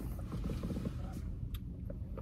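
Faint clicks and rustles of a plastic boba drink cup being handled over a low steady hum in a car cabin.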